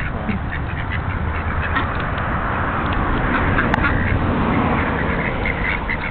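A flock of domestic ducks quacking together in a dense, continuous chatter. A single sharp click sounds about three and a half seconds in.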